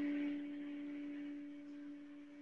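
A steady low tone with a fainter overtone an octave above, fading slowly toward the end.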